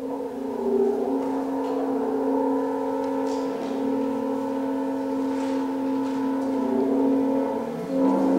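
Contemporary chamber ensemble sounding a dense chord of several steady held tones. The chord comes in suddenly and loudly at the start and is sustained unchanged in character, with its inner pitches shifting slightly along the way.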